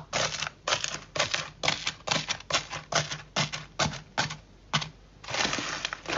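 Iceberg slime's dried crust crunching and crackling as fingers press and break it: a quick run of short, crisp crunches, about three a second, then a longer crackle near the end.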